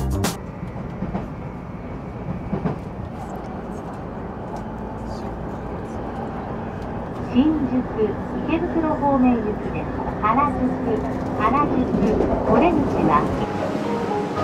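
Commuter train running, heard from inside the carriage: a steady rumble and rush of noise. Voices talk over it from about halfway through.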